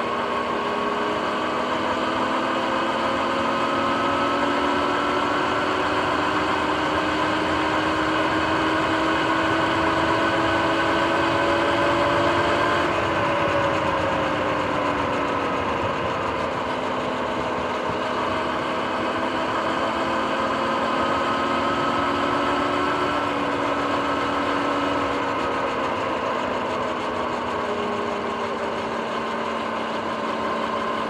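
Sur-Ron X electric dirt bike's motor and chain drive whining while riding. The whine rises in pitch with speed over the first twelve seconds or so, drops as the bike slows, then rises and falls again. Under it is a steady rush of wind and tyre noise.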